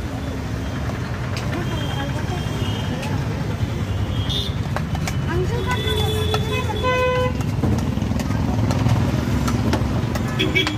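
Busy crowd and traffic noise: a steady low rumble under background chatter, with a vehicle horn tooting about six to seven seconds in.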